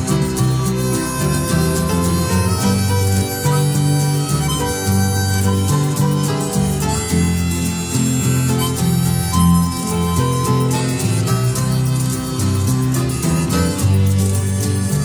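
Instrumental break in an Italian progressive rock song, with no singing: a lead instrument holds long notes over a moving bass line.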